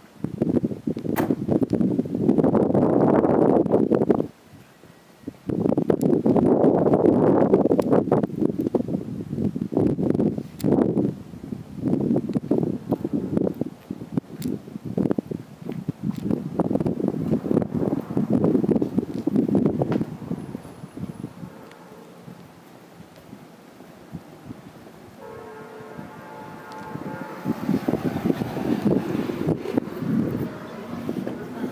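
Wind buffeting the camera microphone in loud, uneven gusts, dropping out briefly about four seconds in and easing off after about twenty seconds. A short pitched tone sounds near the end.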